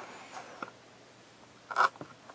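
Faint clicks and light rustling from handling blister-carded Hot Wheels die-cast cars, with one short, louder burst of noise near the end.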